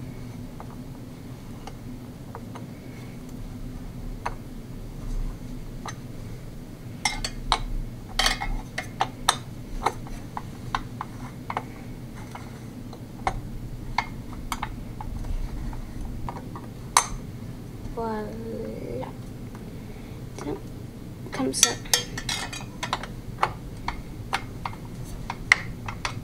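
Long screwdriver clicking and clinking on metal while tightening a Noctua NH-U9S CPU cooler's mounting screws, a little on each side. Scattered sharp clicks come in clusters, busiest about a third of the way in and again near the end.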